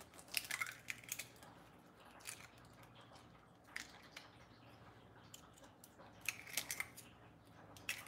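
Faint clicks and crackles of eggshell halves being handled as an egg is separated by hand over small ceramic ramekins. The sounds come in a few short clusters, near the start and again about two-thirds of the way through.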